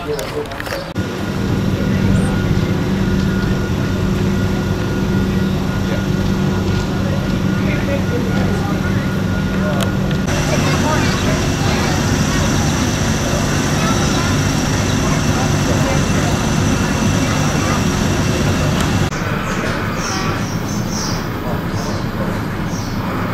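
Diesel railcar engines idling with a steady low hum. About ten seconds in, the sound cuts to a different idling engine with a thin high whine over it, and near the end to a quieter stretch.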